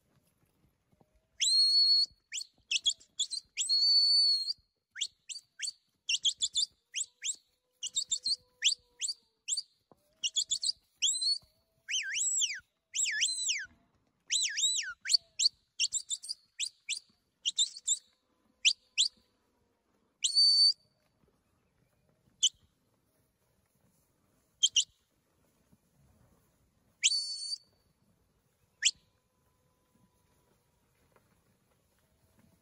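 A handler's high-pitched herding whistle sounding commands to a working border collie: short held notes and quick downward-sliding whistles in rapid succession, then a few single whistles spaced out over the last ten seconds.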